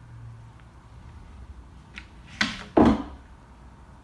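Two sudden thumps about two and a half seconds in, the second louder, as a cat jumps down off a table onto furniture or the floor.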